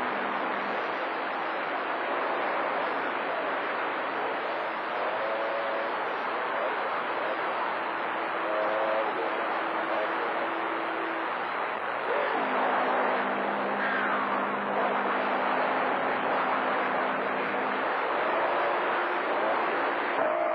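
CB radio receiving channel 28 skip: a steady hiss of band static with low steady tones that shift pitch about twelve seconds in. Faint, wavering voices come and go under the noise.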